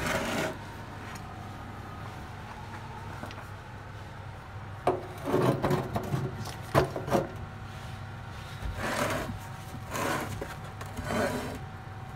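Rubbing and scraping from a large stone ammonite fossil being handled on a wooden workbench, in several short bursts from about five seconds in, over a steady low hum.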